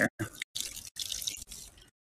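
Water from a watering can splashing onto potting soil and bean leaves. It comes as a hissing trickle, broken by a few short gaps, and cuts off suddenly shortly before the end.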